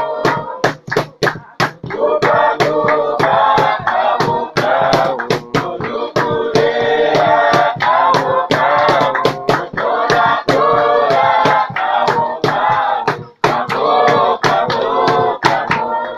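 A church worship group singing together, several voices in harmony, over a steady rhythm of sharp beats about three a second. The singing ends right at the close.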